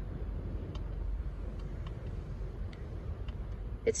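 The Jeep Wrangler's 3.6-litre V6 idling, a low steady rumble heard from inside the cabin. A few faint clicks come from steering-wheel buttons being pressed.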